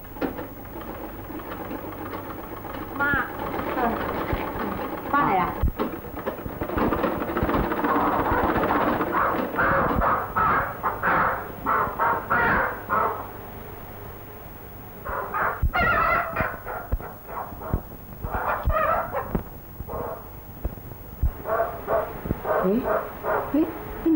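Live chickens squawking and clucking in repeated bursts.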